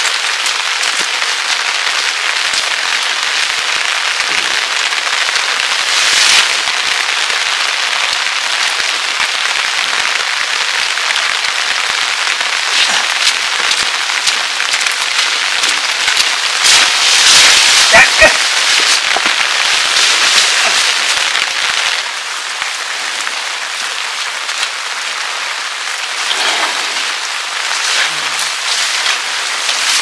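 Steady rain falling, a dense even hiss. Louder rustling and crackling of leafy branches come and go as armfuls of fresh fodder are dragged and thrown down, loudest about halfway through.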